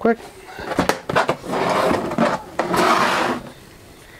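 Handling noise as a thermal imager and its hard plastic carrying case are moved about on a work surface: a few clicks and knocks, then two stretches of scraping and rustling, each about a second long.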